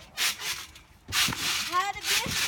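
Laughter, with rubbing, rustling noise of a body and a yoga ball on a trampoline mat; a short noisy rustle about a quarter second in, then a longer stretch from about halfway, with rising laughing voices near the end.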